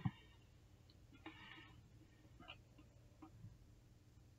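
Faint scraping and a few small ticks of a pointed tool prying an LED strip off its double-sided tape on an LED ceiling light, with a short soft knock at the very start.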